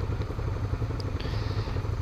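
Motorcycle engines idling steadily with a low, rapid pulse while stopped in traffic.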